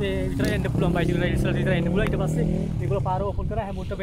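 A motorcycle engine running steadily under a man's talk, dying away about two and a half seconds in.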